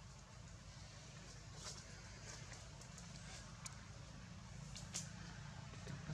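Quiet background with a steady low hum and a few faint, sharp clicks scattered through it.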